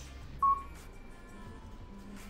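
A single short, high electronic beep about half a second in, over faint background music.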